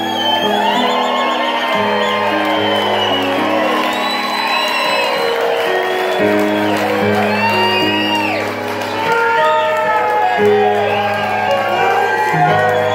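Live band music from the PA: a keyboard holding sustained chords under a bending, wavering lead melody, with whoops from the audience.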